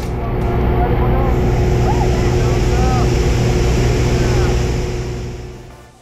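A small aircraft's engine and propeller drone steadily in the cabin, with wind rush and a few short shouted voice fragments over it. The sound fades out in the last second.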